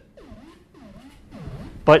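Eurorack modular synthesizer voice played by an Intellijel Metropolis step sequencer, looping a quiet pattern of notes, about two and a half a second, each with a swooping dip and rise in pitch. The sequencer's scale is set to Locrian.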